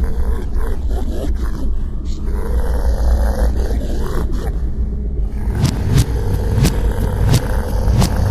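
Intro of a black metal song: a loud, low, distorted rumble of bass and guitar, with regular drum hits coming in about five and a half seconds in.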